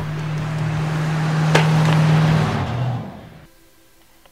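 A motorhome driving past, its engine hum and road noise swelling and then fading, with one sharp click about one and a half seconds in. The sound cuts off abruptly about three and a half seconds in.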